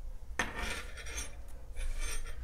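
Hands setting a crocheted yarn piece down and smoothing it across a wooden tabletop: a sudden rub about half a second in, then about a second of scratchy rubbing, and a softer rub near the end.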